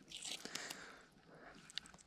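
Faint handling noises: a few soft scrapes in the first second, then a single sharp click near the end.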